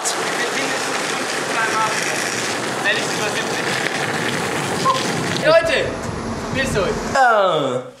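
Longboard wheels rolling fast over asphalt, a steady rushing roar. Near the end a few short shouted voices break through, one falling in pitch.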